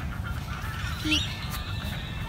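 A short, wavering bird call about a second in, over a steady low rumble.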